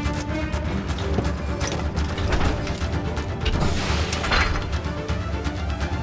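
Metal armor plates and fittings being clamped and bolted on, with rapid clicks, clanks and ratcheting and a louder scraping rush about four seconds in, over a background film score.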